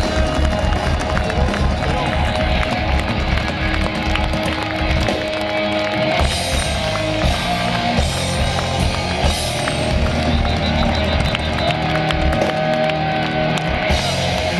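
Hard rock band playing live through a festival PA: electric guitars, bass and drums, with sustained held guitar notes over a steady drum beat, recorded from within the crowd.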